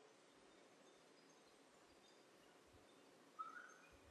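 Near silence: room tone, with one faint short chirp near the end.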